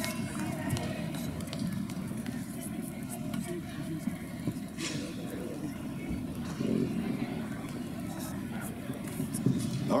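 Arena crowd hubbub: many voices talking and calling out at once, with a few sharp clicks.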